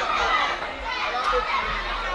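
A large crowd of many voices chattering and calling out at once, a dense unbroken babble.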